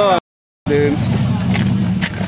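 Race car engine idling with a steady low rumble under shouted voices. The sound drops out completely for about half a second near the start.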